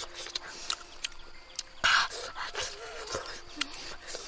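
Close-up eating sounds from biting and chewing grilled fish: a run of short wet clicks and lip smacks, with one louder short burst about two seconds in.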